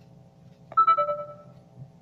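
A short electronic chime, a high note followed at once by a lower one, sounding about three-quarters of a second in and ringing out over about a second, over a faint steady hum.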